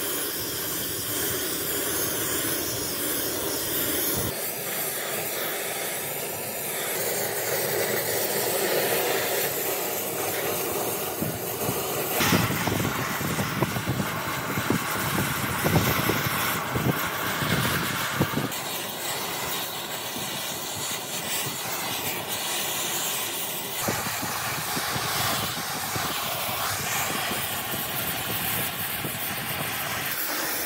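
Oxy-fuel cutting torch hissing steadily as its flame plays over rusty steel, with crackling pops in the middle stretch. The sound shifts abruptly a few times.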